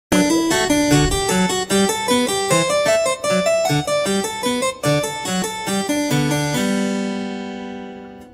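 Harpsichord playing a quick classical-style piece: a busy run of plucked notes, ending about two-thirds of the way in on a held chord that rings and fades away.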